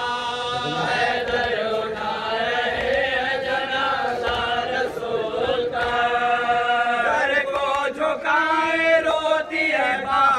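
Men's voices chanting a Shia mourning lament together in long, drawn-out sung lines.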